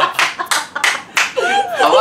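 A person clapping while laughing, about five loose, uneven claps over the first second or so. Laughing voices come in near the end.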